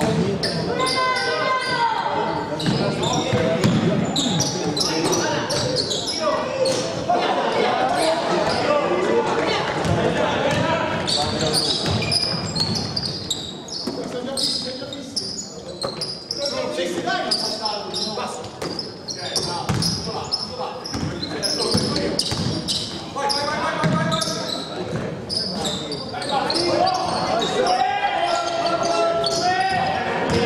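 Basketball being dribbled on a hardwood gym floor during live play, repeated bounces echoing in a large hall, with voices calling out over the game.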